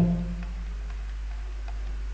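Steady low hum and room tone with a few faint, scattered ticks.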